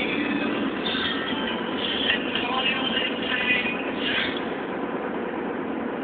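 Steady road noise inside a moving car's cabin, with a girl's voice breaking in briefly a few times.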